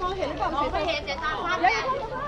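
People talking: chatter of several voices close by.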